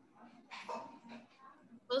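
Faint, indistinct sounds over a video-call line, then a voice loudly calling out a name right at the end.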